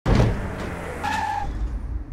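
Sound effect of a vehicle peeling out: a loud engine rumble with tyre-screech noise that starts abruptly, and a brief high tone about a second in.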